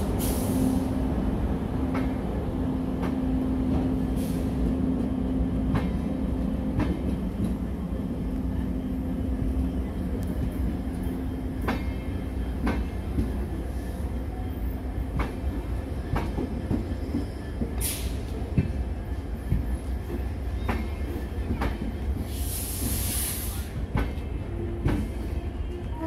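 Indian Railways passenger coaches rolling past on departure: a steady rumble with irregular clicks as the wheels cross rail joints. A steady hum runs through the first ten seconds, and brief hisses come about eighteen seconds in and again near the end.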